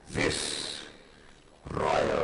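Davros's electronically distorted, growling voice over the hall's PA. One short phrase just after the start, then a pause, then the next phrase begins near the end.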